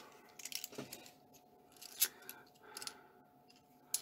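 £2 coins clicking against each other as a stack is handled and thumbed through in the fingers: a few scattered short clicks, the sharpest about two seconds in.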